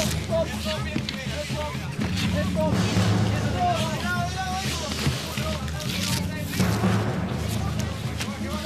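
Several people shouting indistinctly, loud and continuous, over background music with a steady low drone.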